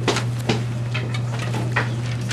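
Footsteps on a hard stage floor, a few separate knocks about half a second apart, over a steady low hum.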